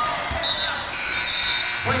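Basketball game sounds in a gymnasium: a ball thuds once on the hardwood floor, and high squeaks ring out over the crowd's background noise. A man's voice on the public-address system starts at the very end.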